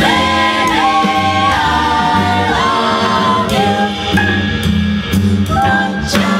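A vocal jazz ensemble singing a swing tune in close harmony over an upright bass: several voices hold chords and shift from one to the next together.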